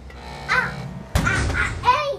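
Background music with a sudden impact a little over a second in. Short, harsh, voice-like cries come about half a second in and again just after the impact.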